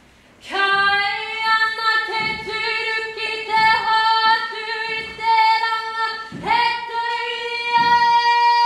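Music track of high voices singing long held notes, a song that starts a new phrase about half a second in after a brief pause.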